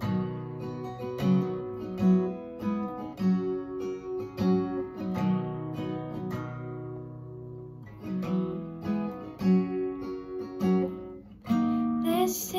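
Acoustic guitar strummed through an instrumental break, with no voice, in G, C and D chords with a steady rhythm. About two-thirds of the way through, a chord is left to ring and fade before the strumming picks up again.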